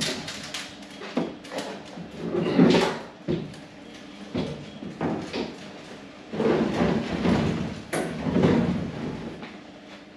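A thin aluminium diamond-plate tool box being handled on a pickup tailgate: its lid shut, then the box lifted, turned and slid around. It gives a string of hollow metal knocks, rattles and scraping, with the loudest bang about two and a half seconds in.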